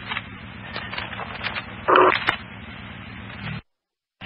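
Fire-dispatch radio traffic heard on a scanner between transmissions: a steady hiss from the open channel, with a short blip about halfway through. Shortly before the end the audio cuts off suddenly to dead silence as the channel closes.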